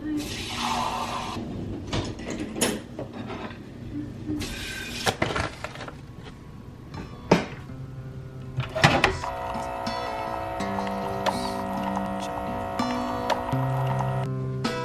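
Dishes and cups clinking and knocking at a kitchen sink, with short runs of tap water. About nine seconds in, background music begins.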